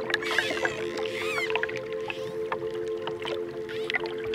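Dolphins whistling and clicking underwater: several up-and-down whistles in the first second and a half, and scattered clicks throughout, over calm music with steady held notes.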